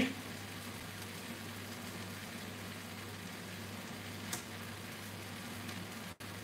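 Low steady hum and faint hiss of kitchen room tone, with one faint click about four seconds in.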